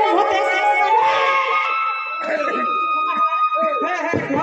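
A performer's voice singing through a stage microphone with a strong vibrato, giving way about halfway to a steady held instrument note with short vocal phrases over it.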